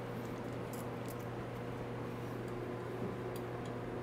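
Steady low hum in the room, with a few faint light clicks as bolts are unscrewed by hand from the cap of a brass reduced pressure backflow preventer.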